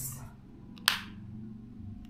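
A single sharp click of a wall light switch being flipped, about a second in, testing whether the power is back on.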